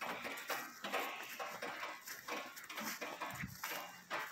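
Faint outdoor noise from a hand-held phone: a steady hiss with irregular rustling and light knocks of handling and movement.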